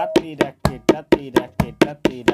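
Tabla played in a quick, even run of short, damped strokes, about four a second, the closed tirakita (tirkit) strokes with the fingers held flat on the drumheads.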